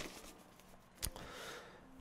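A quiet pause: a faint mouth click about a second in, then a soft, short breath in.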